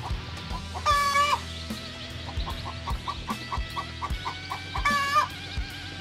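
A brooder full of day-old Dominant CZ pullet chicks cheeping, over background music with a faint steady beat. Two louder held tones stand out, about a second in and near the end.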